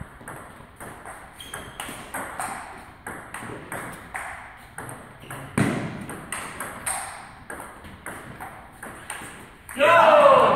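Table tennis ball clicking off the bats and table in a fast rally, several hits a second, with one harder hit about halfway through. Right at the end a loud shout breaks out as the point ends.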